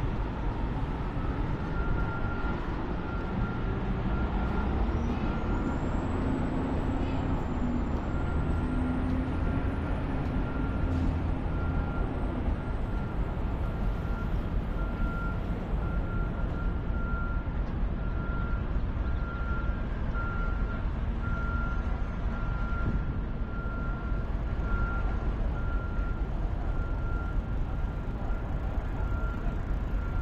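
Steady rumble of city traffic. A high whine rises and falls during the first half, and a high beep repeats from near the start to the end.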